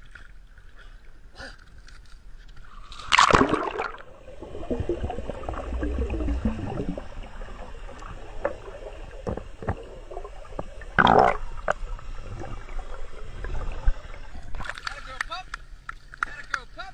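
A splash about three seconds in as a dog dives off a boat into the sea, then muffled underwater water noise heard from below the surface, and a second splash about eleven seconds in.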